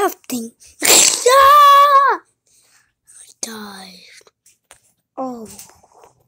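A child's voice making wordless vocal sounds: a sharp breathy burst about a second in that runs straight into a long, high held note, then two shorter calls that fall in pitch.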